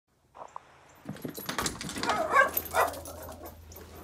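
Dog whining and yipping at a sliding glass door, a few short high calls that bend in pitch, the loudest about two and a half seconds in; it is eager to be let outside.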